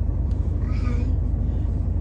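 Steady low rumble inside a car's cabin, with one short, faint vocal sound, like a brief hum, a little under a second in.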